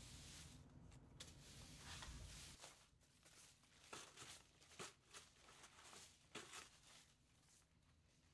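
Near silence, with faint scrapes of a broom's bristles sweeping leaves and dirt across a concrete floor, a few of them short and separate in the second half.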